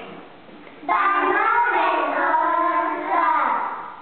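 Young children singing together: a sung line starts suddenly about a second in, held with a few changes of pitch, and fades just before the end.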